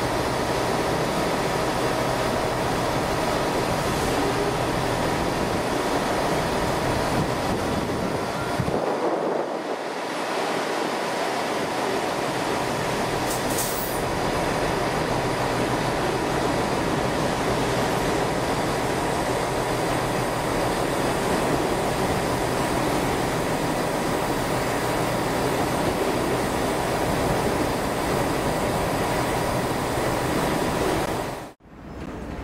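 Freight train's hopper wagons rolling past on the rails with a steady rumble and rattle of wheels and running gear.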